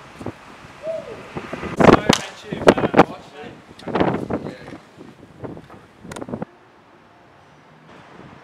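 Excited shouts from a group of young men celebrating a landed scooter trick, with a few sharp hand slaps, loudest between about two and three seconds in. The sound cuts off suddenly about six and a half seconds in, leaving only faint outdoor hiss.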